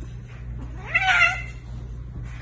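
A cat's drawn-out meow that rises in pitch and is loudest about a second in, made while it wrestles with another cat.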